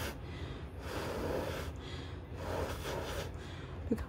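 A person blowing long breaths through pursed lips onto a strip false eyelash to make the freshly applied lash glue tacky faster. A few soft rushes of air.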